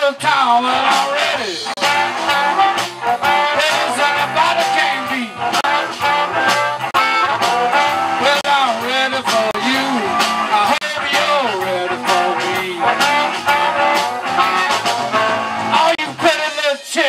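Live blues band playing: a harmonica leads with bending notes over electric guitar, electric bass, drums and keyboard.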